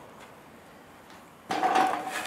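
Quiet room tone, then about one and a half seconds in a brief clatter, something hard being handled or knocked, lasting about half a second.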